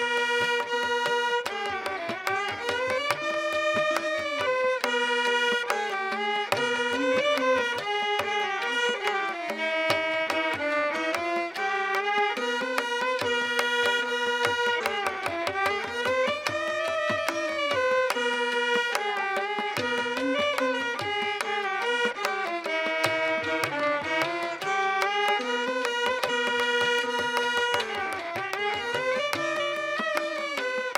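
Carnatic instrumental music: violins carry a melody full of gliding, bending ornaments, accompanied by mridangam and ghatam strokes throughout.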